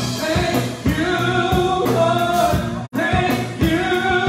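Man singing a gospel song into a handheld microphone over musical accompaniment, holding long notes. The sound drops out for an instant about three seconds in.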